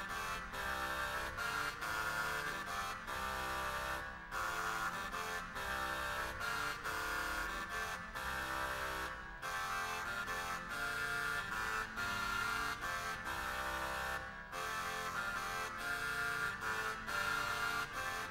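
Renaissance dance music played by an early-music wind consort with a nasal, buzzy reed sound, in a steady pulse. The phrases break off briefly about every five seconds.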